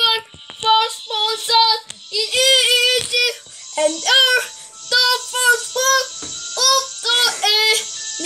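A child singing a run of short notes, mostly on one pitch, in a small room.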